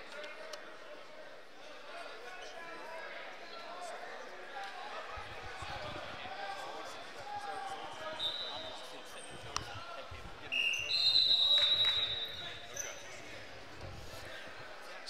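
Crowd murmur in a large gym, with a referee's whistle blown long and shrill about ten and a half seconds in, stopping the wrestling for a restart. A brief, fainter whistle comes a couple of seconds before it.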